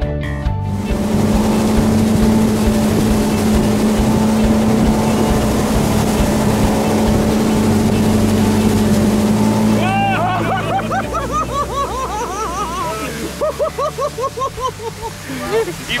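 Tow boat engine running at speed over rushing water and spray, a steady drone for most of the first ten seconds. It is followed by a man laughing in the boat.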